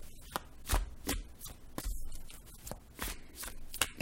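Tarot deck being shuffled by hand: quiet, irregular card slaps and flicks, a few each second.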